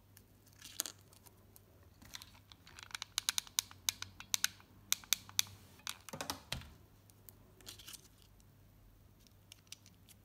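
Hands handling a foamiran flower on a metal snap hair clip: scattered small clicks and crackles, densest in a run from about three to five and a half seconds in, then a short rustle and a few more light clicks.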